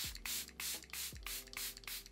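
Face mist pump spray bottle being spritzed rapidly many times over the face, a quick run of short hisses at about four to five a second, over steady background music.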